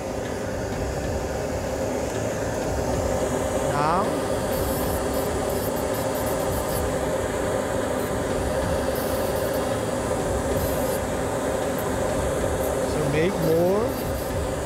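Dental lab micromotor handpiece spinning a thin cutting disc against a PMMA prototype, grinding between the teeth to open the embrasures. A steady motor whine, its pitch sweeping up about four seconds in and again near the end.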